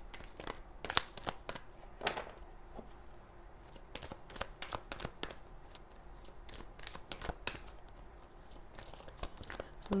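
Tarot cards being gathered and reshuffled by hand: a scattered run of light, irregular card clicks and snaps, busiest around the middle.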